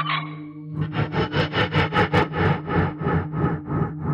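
TARDIS dematerialisation sound effect over a steady low console hum: an electronic pulsing, about five beats a second, that starts just under a second in, builds to a peak about two seconds in, then fades.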